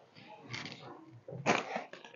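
Thin chiffon fabric rustling as it is gathered and dragged across a cloth-covered table, in short bursts, the loudest about one and a half seconds in.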